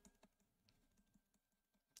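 Near silence, with a few faint ticks of a stylus on a drawing tablet as a word is handwritten.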